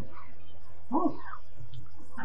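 A steady low electrical hum from the old recording fills a pause in speech. About a second in comes one brief vocal sound that rises in pitch.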